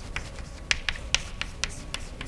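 Chalk writing on a blackboard: a quick, irregular series of sharp taps and ticks, about seven in two seconds, as the chalk strikes and drags across the board.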